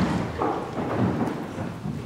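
Congregation getting up from the pews: a low rumble of shuffling, rustling clothes and movement, heaviest in the first second and easing off.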